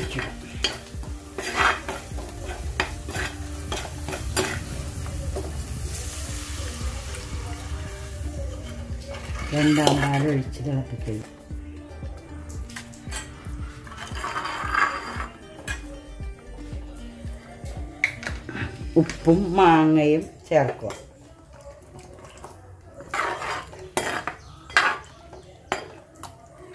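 Metal ladle stirring and scraping around a clay pot of simmering fish curry, with repeated clinks and a light sizzle. A low steady hum stops about twenty seconds in.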